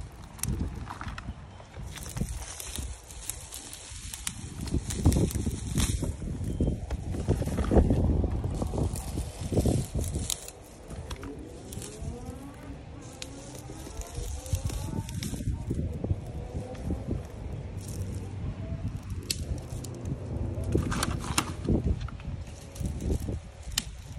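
Dry, dead plant stems and seed heads crackling and rustling in irregular bursts as gloved hands pull them from a planter and drop them into a bucket, with a low rumble underneath.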